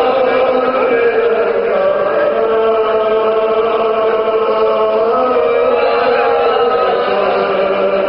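A man singing a marsiya, an Urdu elegy for Imam Hussain, without instruments, in long held, slowly wavering notes.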